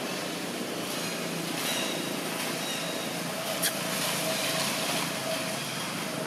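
Steady outdoor background rush, like distant traffic, with a few faint high chirps and one sharp click about two-thirds of the way through.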